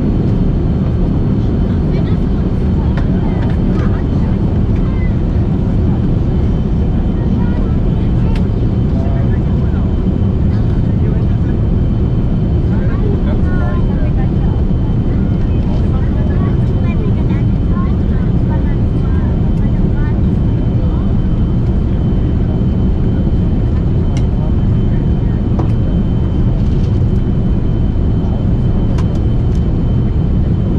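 Steady cabin noise of a Boeing 747-400 in flight: an even, deep rumble of its four turbofan engines and the airflow over the fuselage, with a faint thin whine above it.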